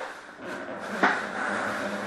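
Cards and card packaging being handled on a glass tabletop: a sharp click about a second in, then a steady rustle as the next box is picked up and opened.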